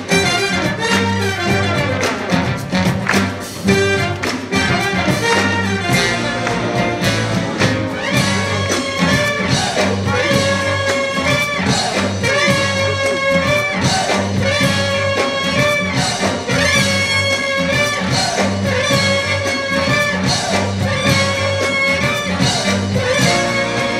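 A jazz big band playing live, brass section to the fore over bass and drums; from about eight seconds in the horns punch out a repeated figure roughly once a second.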